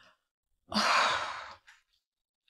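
A woman's long, breathy sigh, starting just under a second in and fading out over about a second: an exasperated sigh after her son has cut the phone call short.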